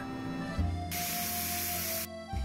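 Milk boiling up and frothing in a steel saucepan on a gas burner: a steady hiss that starts suddenly about a second in. Background music plays throughout.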